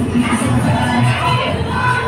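Loud dance music with a steady low beat, about two thuds a second, under a crowd of women calling out and cheering.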